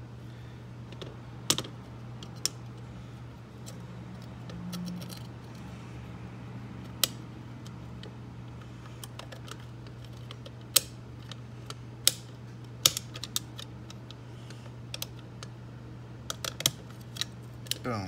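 Small, sharp metal clicks and taps, coming irregularly and more often in the second half, as a steel tool and the parts of an antique double-bit mortise lock are worked back into the lock case. A steady low hum runs underneath.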